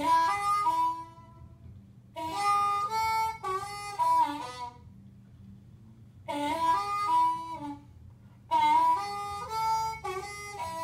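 Diatonic blues harmonica played in four short phrases of stepping notes with pauses between them, some notes sliding in pitch as slight bends on the hole-2 draw.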